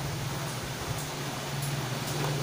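Steady low hum with a faint even hiss, with no music or speech in it: background room noise.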